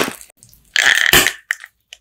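Close-miked eating sounds: a short bite at the start, then a longer, louder bite and chew about a second in, followed by a couple of quick mouth clicks before the sound cuts out briefly.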